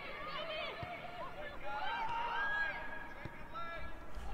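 Players' voices shouting and calling across an outdoor football pitch, with pitch-side ambience and a couple of faint thuds of the ball being kicked.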